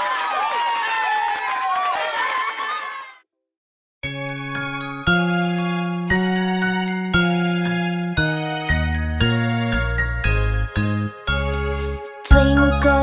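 A tinkling, shimmering chime effect with many wavering tones fades out over about three seconds. After a second of silence, an instrumental intro to a children's song begins, with held chords over a stepping bass line.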